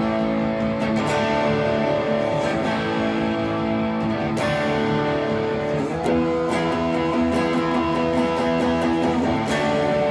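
Gibson Les Paul Classic electric guitar played through a JHS Bonsai overdrive pedal on its OD-1 setting: strummed overdriven chords with steady pick strokes, the chord changing every few seconds.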